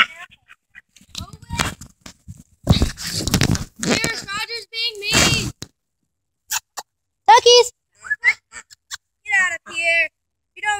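Handling and rustling noise as the phone is set down in the grass, loudest about three seconds in, with scattered short calls around it: domestic ducks quacking and girls' voices.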